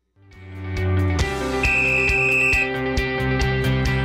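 A brief silence, then a sports show's opening theme music fades in with sustained notes. A high held tone sounds for about a second in the middle, and a quick, regular beat comes in near the end.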